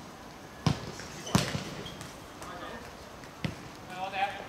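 A football being kicked and bouncing on a hard court: four sharp thuds, the loudest about a second and a half in, the last near the end.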